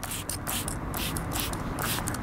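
Hand trigger spray bottle of soapy water squirting along a tire's bead in a quick series of short sprays, about three a second, to show up a slow bead leak as bubbles.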